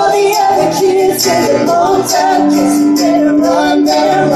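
Live pop-rock band playing with electric guitar, bass, keyboard and drums, a woman singing over it, with a long held note in the second half.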